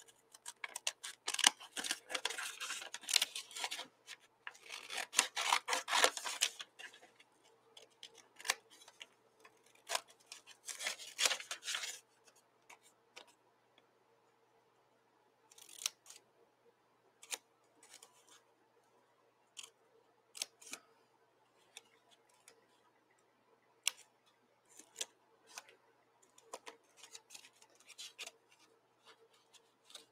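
Scissors cutting through a folded sheet of painted paper: quick runs of snips with paper rustle for the first several seconds and again around ten seconds in, then fewer, single snips.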